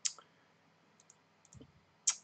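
Quiet room with a few faint, short clicks: one right at the start and two more about a second later.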